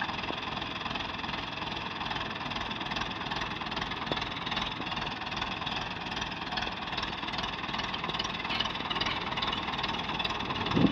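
Ursus C-360 tractor's four-cylinder diesel engine running steadily at low revs.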